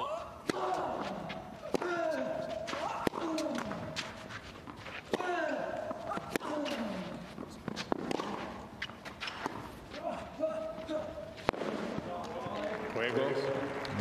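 A long tennis rally on clay: racquet strings hit the ball about every second to second and a half, back and forth between two players, with short effort grunts from the players on or just after the strikes.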